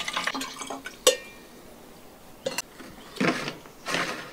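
Water pouring from an enamel jug into a plastic sprayer bottle, topping the spray mix up to a litre; the pour trails off within the first second. Just after that comes a sharp clink with a short ring as the enamel jug is set down, then light plastic clicks and rustling as the sprayer's pump head is fitted.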